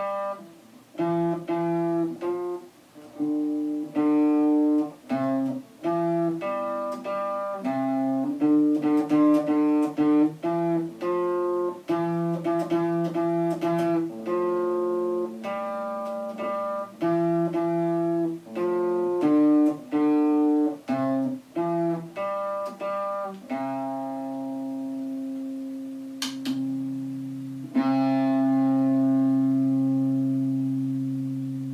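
Electric guitar strummed on old, rusted strings, chords struck in a steady rhythm; near the end one chord is left to ring out, then struck again and held.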